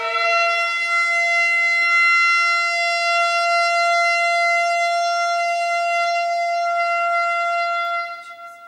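Shofar blown in one long blast, stepping up to its higher note at the start and held steady for about eight seconds.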